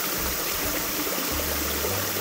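A small cascade in a mountain stream, water running steadily over boulders and splashing into a shallow pool.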